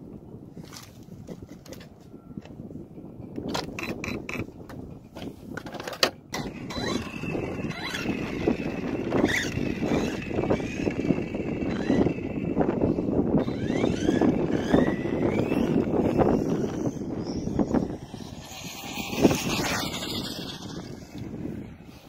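HoBao EPX electric RC car's motor and drivetrain whining as it is driven at speed, the pitch rising and falling with the throttle for about ten seconds after some handling clicks, with one sharp knock near the end.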